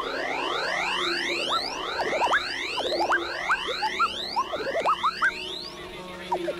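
Drum and bass music from a live DJ set in a beatless breakdown: a fast succession of rising synth sweeps, several a second, with short upward-gliding blips over them.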